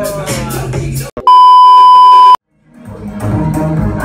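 Music with voices cut off about a second in by a loud, steady, high beep lasting about a second, a censor bleep over a word. A brief silence follows, then club music with a beat comes back in.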